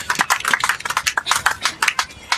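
A small congregation clapping their hands together: a dense, irregular run of many claps a second, given in praise at the close of a worship service.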